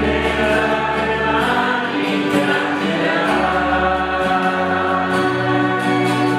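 Choir singing a sacred song, with long held chords over sustained low notes that change every second or two.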